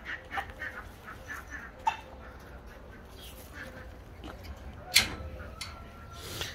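Faint, scattered clucks and low calls from a flock of Brahma chickens, with a sharp knock about five seconds in.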